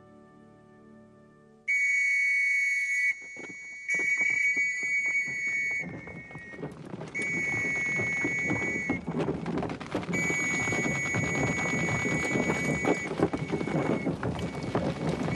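Officers' trench whistles blown in four long shrill blasts, more than one whistle at slightly different pitches: the signal for troops to go over the top. A growing noisy din of movement rises beneath the blasts from about four seconds in.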